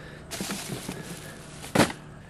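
Junk being handled and rummaged through: a rustle with small knocks for about a second, then a single sharp knock near the end, the loudest sound.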